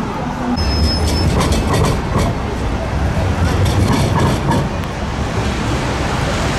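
A Bobó diesel locomotive running with a steady low rumble as it moves past, with scattered clicks and a brief high squeal about a second in.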